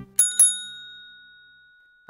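A small handheld bell struck twice in quick succession, then one clear high ring that fades away slowly.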